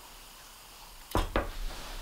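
A metal fork clicking twice in quick succession against a glass jar about a second in, followed by low rumbling handling noise.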